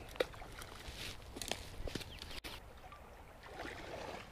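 Faint creek-side outdoor ambience with scattered light clicks and taps, broken by a brief dropout about two and a half seconds in.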